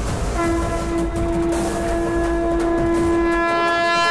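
One long, steady horn note with a bright, buzzy edge, starting about half a second in and held without a break, over a noisy backing from the film's soundtrack.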